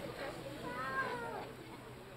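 A faint, high-pitched voice somewhere in the background gives one drawn-out call that rises and then falls, about half a second in.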